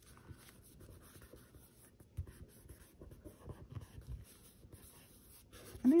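Soft, scratchy rubbing and rustling of fingers pressing and smoothing a washi paper sticker down onto a paper tag, with a few small taps.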